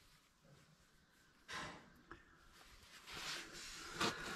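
Near silence, with a faint breath about one and a half seconds in and another soft breath near the end.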